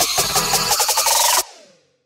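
Electronic music track with a fast, even drum and hi-hat beat under a slowly rising high tone. It cuts off abruptly about one and a half seconds in, leaving a short fading tail and then silence.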